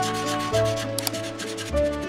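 Felt-tip marker nib rubbing back and forth on paper as a shape is coloured in, over light background music with a steady bass line.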